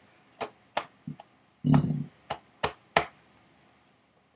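A man's short burp about two seconds in, set among several sharp clicks and taps.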